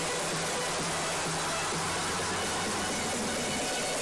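Music, partly buried under a steady noisy hiss.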